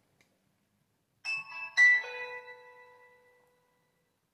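An iPro basic keypad phone playing its switch-on jingle: two short chiming notes about half a second apart, the second ringing on and fading over about a second and a half.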